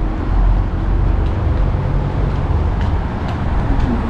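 Road traffic on a busy city street: a steady rumble of passing cars' engines and tyres.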